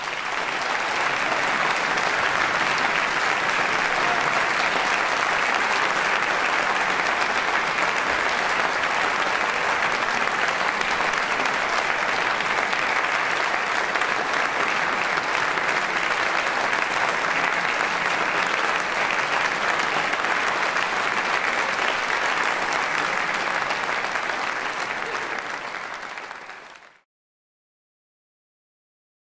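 An audience applauding steadily. The applause fades slightly, then cuts off abruptly near the end.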